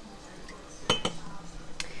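A metal measuring spoon clinking against a glass canning jar as a tablespoon of lemon juice is tipped in. There are two sharp clinks close together about a second in, with a brief ring, then a lighter one near the end.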